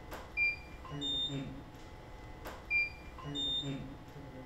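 Camera shutter and studio flash firing twice, about two and a half seconds apart. Each shot is followed by two short high beeps of different pitch as the flash units recycle and signal ready.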